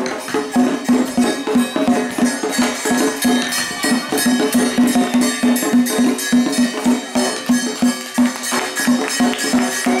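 Chinese lion dance music: drum and clashing cymbals beating out a steady, fast rhythm.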